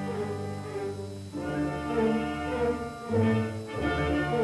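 Orchestral film score: bowed strings holding sustained chords over a low bass line, changing chord about every second.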